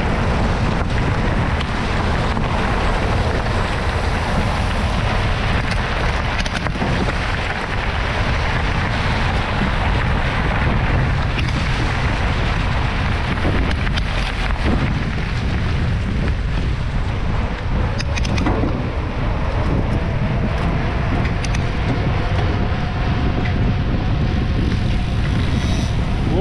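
Wind rushing over the on-board camera microphone of a moving mountain bike, with tyres rolling on a gravel track. A few short clicks and rattles from the bike come through.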